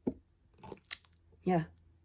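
A few short, sharp clicks in the first second, then a girl's voice saying a quiet "yeah".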